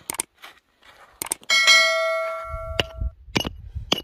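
A bell 'ding' sound effect, the kind laid under a subscribe-button animation, rings out sharply for about a second and a half, just after a quick double click. Around it come scattered short knocks of a small hand pick chopping into hard, stony soil.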